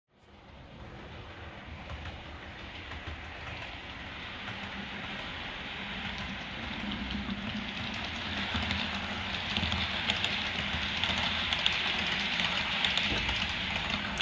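Hornby OO gauge Class 800 model train running on layout track: a steady rumble and clatter of wheels on the rails with a low motor hum. It grows gradually louder as the train comes nearer.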